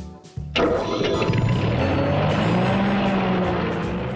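A vehicle engine sound effect that starts suddenly about half a second in and keeps running, its pitch slowly rising and falling.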